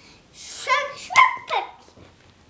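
Young child's high-pitched vocal sounds: a breathy onset, a short wavering cry, then two sharp cries that fall in pitch.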